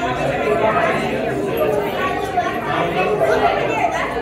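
Indistinct chatter of many overlapping voices in a large indoor public hall.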